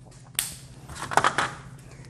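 A sharp plastic click about half a second in, then a second of crackly rustling from hands handling a whiteboard marker.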